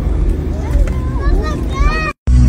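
People's voices over a steady low rumble. A high-pitched voice rises in pitch near the end.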